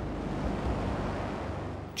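Steady rushing noise of a jet aircraft in flight, with a low hum underneath at first, fading gradually near the end.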